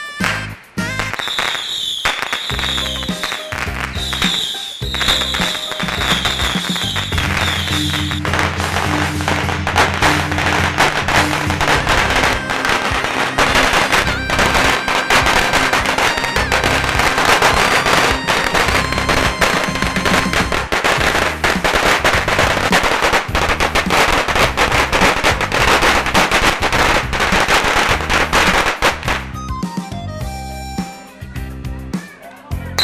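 A long string of firecrackers going off in a rapid crackle, sparser at first and then a dense, continuous crackle from about eight seconds in that stops just before the end. Music plays underneath.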